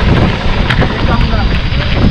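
Wind rumbling on the microphone of a helmet- or chest-mounted camera as a mountain bike rolls down a loose gravel trail, with tyres crunching and sharp knocks and rattles from the bike over stones.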